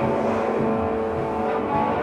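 Band playing live: an electric guitar holds a long sustained chord while drums keep time underneath.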